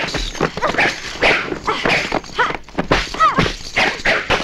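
Movie fight-scene soundtrack: two women's short shouts and pained cries mixed with a rapid run of sharp punch, kick and body-fall impacts.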